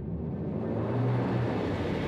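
A dramatic swell in the background score: a rising rushing noise over a low rumble, building like a drum roll toward its peak at the end.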